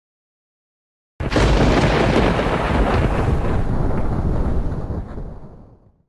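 A loud boom sound effect. It starts suddenly about a second in, rumbles on, and fades away over the last second or so.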